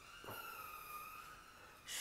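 Pen scratching faintly on paper while writing a couple of words, over a faint steady background tone.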